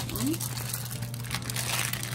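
Crinkly plastic candy packet rustling as it is handled and cut open with scissors, an irregular crackling throughout.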